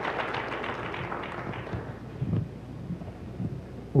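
Church congregation applauding, the clapping dying away over the first two seconds, followed by a few soft low thumps.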